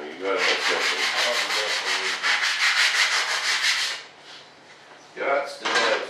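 Sandpaper worked quickly back and forth by hand on a small board, about seven strokes a second, for some four seconds before it stops.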